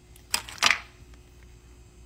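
Two short, sharp clicks about a third of a second apart, from handling tools over a plastic seedling tray.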